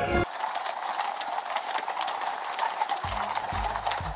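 Many horses' hooves clip-clopping on a paved road as a horse-drawn carriage procession with mounted escort passes, a dense run of overlapping hoof strikes. A low steady hum joins about three seconds in.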